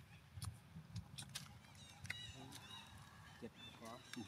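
Faint, short, high-pitched animal calls, repeated several times from about halfway in, with a few sharp clicks in the first half.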